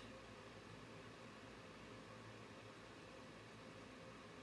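Near silence: room tone with a steady faint hiss.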